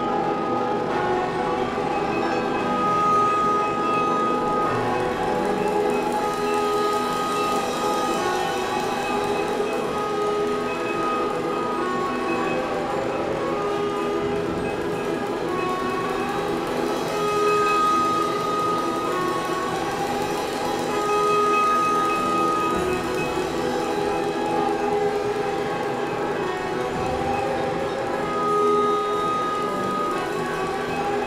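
Live percussion-ensemble music: a dense, steady wash of layered sustained tones, with a higher held note that returns every few seconds.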